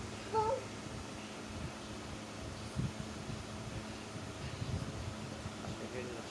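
A young child's short voiced sound about half a second in, then a quiet room with a steady low hum and a few faint soft bumps.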